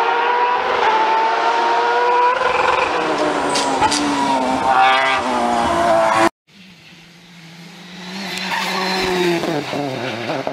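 Rally car engine at high revs under hard acceleration, its pitch climbing steadily with gear changes, for about six seconds; then a sudden cut, and another rally car's engine grows louder as it approaches, its pitch shifting near the end as the driver lifts or changes down.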